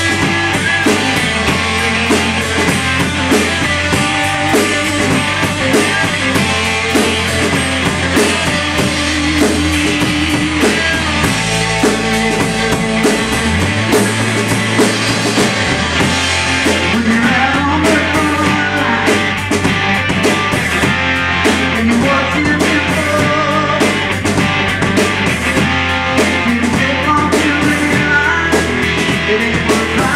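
Live rock band playing: two electric guitars, electric bass and drum kit, with a steady beat and moving bass line.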